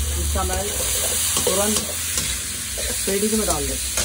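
Shredded cabbage and spices sizzling in a pan over a gas burner, while a metal spatula stirs and scrapes it with a few sharp clinks.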